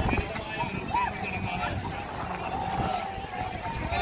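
Indistinct chatter of many voices talking at once, with a low rumble underneath.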